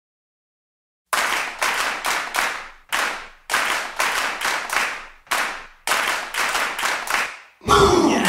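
Rhythmic hand claps, about two a second in repeating groups, each with a ringing tail, opening a soundtrack song. The song comes in with heavy bass and singing just before the end.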